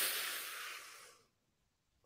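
A deep breath drawn in close to a microphone: a breathy hiss that fades out about a second in, then silence as the breath is held.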